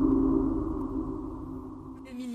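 A low electronic drone of several steady held tones with a rumble beneath, fading out.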